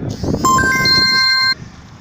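A loud electronic chime: a quick high sweep, then several steady synthetic tones coming in one after another and held together for about a second before cutting off abruptly.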